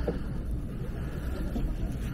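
Wind buffeting the microphone of a handlebar-mounted camera on a moving bicycle: a steady low rumble.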